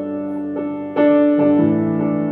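Solo piano improvisation recorded on a phone: slow, sustained notes and chords ringing on, with a louder chord struck about a second in.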